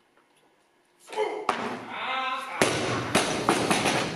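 Shouting voices as a snatch is lifted, then a loaded barbell with rubber bumper plates is dropped onto the lifting platform with a heavy crash, knocking a few more times as it settles. The lift is a failed snatch, ruled no lift.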